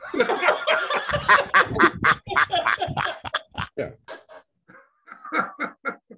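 Several men laughing together over a video call, overlapping voices in quick pulses, loudest in the first few seconds and then tapering off into scattered chuckles.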